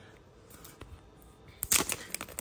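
Rigid plastic card toploaders being handled: a few faint clicks, then a quick cluster of sharp plastic clicks and rustles near the end as they are picked up.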